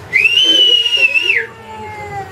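One long, loud whistle from a person: the pitch glides up at the start, holds high and steady, then drops off at the end, lasting a little over a second.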